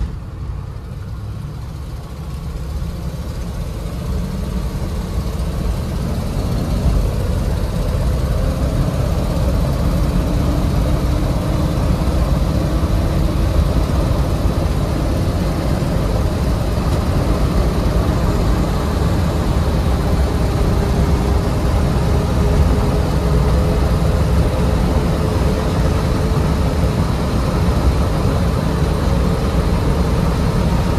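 Inside the cabin of a 1986 Jeep Grand Wagoneer with its AMC 360 V8 pulling away and gathering speed. The sound grows louder over the first several seconds, then settles into a steady highway cruise. Engine, road and wind noise are loud in the cabin because the back window is open.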